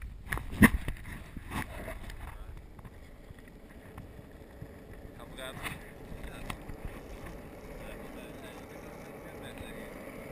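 Skateboard wheels rolling on an asphalt road, a steady rumble that grows slightly louder toward the end, with a few sharp knocks in the first two seconds.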